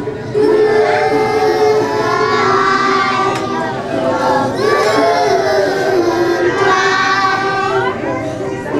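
A group of young children singing a song together in unison, their voices held on sustained notes with short breaks between phrases.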